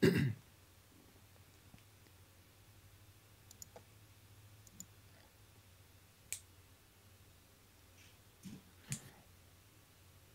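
A short thump at the start, then a few faint, scattered clicks and taps over a steady low electrical hum, the small sounds of someone working at a desk.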